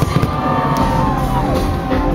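Loud music over a stadium crowd, with fireworks going off: a few sharp bangs near the start above a dense low rumble.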